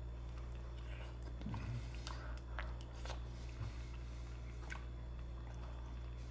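Faint chewing and mouth sounds of a person eating a soft, egg-textured mug pudding from a spoon, with a few small clicks, over a steady low hum.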